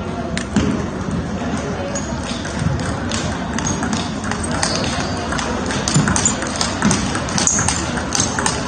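Table tennis being played: quick, sharp clicks of the celluloid ball off the bats and table, growing denser from about halfway in, over the steady background chatter and clatter of a busy training hall with many tables going.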